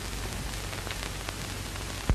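Steady hiss and faint crackle of an early sound-film soundtrack, with a low hum under it.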